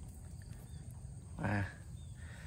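Faint outdoor background with a low rumble, and about one and a half seconds in a single short, slightly falling vocal sound from a man's voice.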